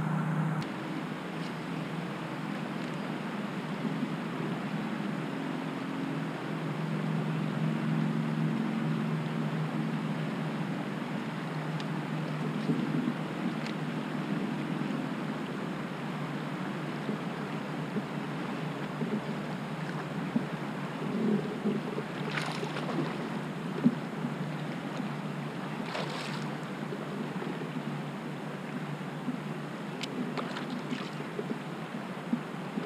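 Water rushing along a moving kayak's hull, with wind on the microphone and a low hum that fades after about ten seconds. A few sharp knocks come in the second half.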